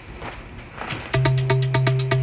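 Electronic beat that starts about a second in: a steady bass note with a synth pattern over it and fast, even hi-hat ticks about eight a second. It is the synth part recorded from an Elektron Digitone into the DAW, playing back.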